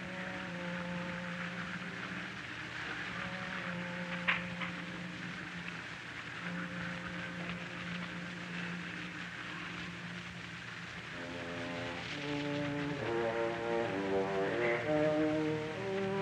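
Opera orchestra in a 1936 live radio broadcast recording, playing soft sustained low chords under a constant hiss of old-recording surface noise, with a single click about four seconds in. From about eleven seconds the music grows louder and busier with a moving figure of stepping notes.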